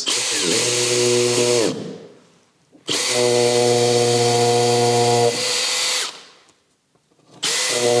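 Makita cordless drill boring pilot holes into a wall through a paper template: three separate runs of the motor at steady speed, a short one, a longer one of about two and a half seconds, and a third starting near the end.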